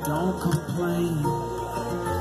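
Acoustic guitar and electric bass playing live, an instrumental stretch of the song with no singing.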